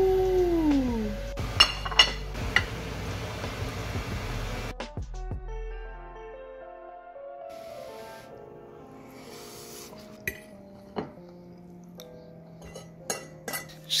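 A drawn-out "ooh" falling in pitch, then a few metal clinks of a utensil on a pan over a low hum. From about five seconds in, soft background music with held notes.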